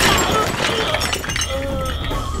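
A ceramic washbasin shattering as a body is smashed into it: a loud crash at the start, followed by scattered clinks of falling pieces.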